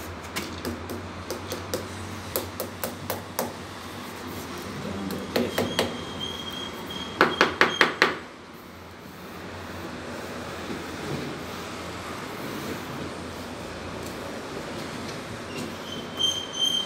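A mallet tapping a ceramic wall tile to bed it firmly into the combed tile adhesive: scattered light taps in the first few seconds, a few more around the middle, then a quick run of about six harder taps.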